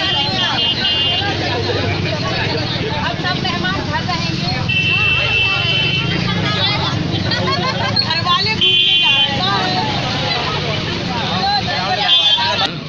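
Crowd of women and girls chattering and calling out over one another beside a bus whose engine idles with a steady low rumble; a short high tone sounds four times.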